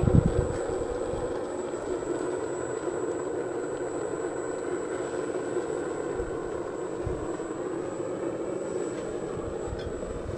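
Small electric ducted fan, the kind used in RC airplanes, running steadily at full speed and blowing air into a waste-oil foundry burner, a continuous whirring rush mixed with the burner's flame.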